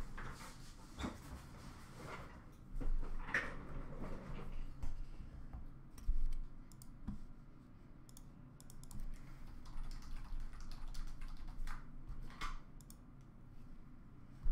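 Intermittent computer keyboard typing and clicks, with a few soft knocks, while a random draw is run on the computer.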